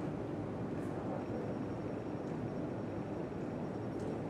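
Steady room noise in a hall: an even low rush without speech, with a faint thin high tone coming in about a second in.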